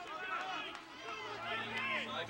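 Players' voices shouting and calling across an outdoor football pitch, several at once. A low steady hum comes in about a second in.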